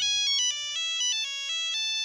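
Phone ringtone playing, an electronic melody of notes stepping up and down in pitch.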